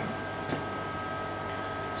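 Steady low hum with a thin, constant high whine from the CNC router's electrics, and one soft click about a quarter of the way in.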